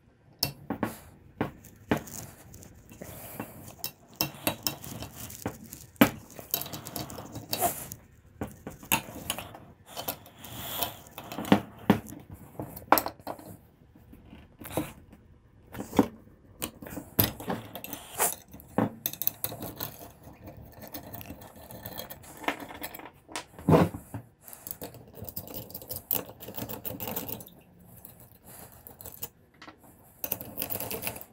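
Irregular metal clinks, clicks and scrapes of a wrench and socket turning the half-inch bolts on the cover plate of a Watts 009 reduced-pressure backflow preventer, with tool and bolts knocking against the valve body.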